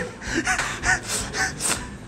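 A man laughing in a run of short, breathy gasps, about four or five puffs of breath with little voice in them.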